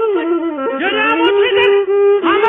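Traditional Amhara qerarto chanting: one high, ornamented voice that bends and wavers through its notes, then holds a long steady note from about halfway. The recording is narrow-band and muffled.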